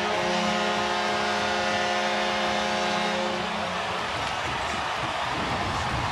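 Arena goal horn sounding one steady low note over a crowd cheering and clapping, signalling a home-team goal. The horn stops about three and a half seconds in while the cheering goes on.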